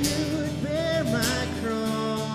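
Live worship music: a man sings into the microphone while playing guitar. His melody moves about, then settles on a held note near the end.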